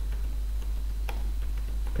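A few scattered computer keyboard clicks, one sharper than the rest about a second in, over a steady low hum.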